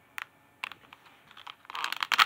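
Light clicks and crinkles of plastic product packaging being handled, sparse at first and busier near the end.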